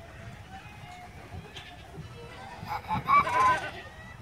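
A single loud farm-animal call, about a second long and wavering in pitch, near the end.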